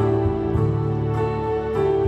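Electronic keyboard playing a slow hymn in long held chords, the chord changing about every half second.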